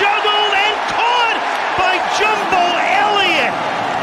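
Stadium crowd cheering loudly after a touchdown, with excited shouting voices over the roar.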